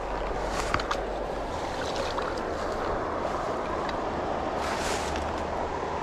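Steady rushing noise of a flowing river, with wind rumbling on the microphone.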